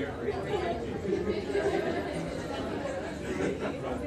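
Many students talking at once in group discussions: a steady hubbub of overlapping conversations with no single voice standing out.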